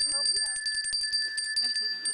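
Small hand bell shaken rapidly, its clapper striking about a dozen times a second over a steady high ring.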